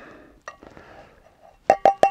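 Hot water poured from a Jetboil cup into a stainless steel thermos flask: a soft trickling hiss that fades, with a light clink about halfway through. Near the end, background music with quick, evenly spaced plinking notes starts.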